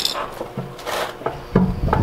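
Pry bar levering a Honda S2000's oil pan away from the bottom of the engine: scraping and creaking of metal as the pan is worked loose, with a sharp click at the start.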